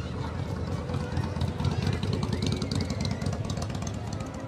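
Engine of a vintage flatbed truck running low and steady as it drives slowly past, with crowd voices over it.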